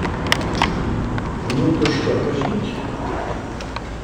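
Handling noise from a hand-held video camera: scattered sharp clicks and knocks, about six of them, over a low room murmur that swells briefly about halfway through.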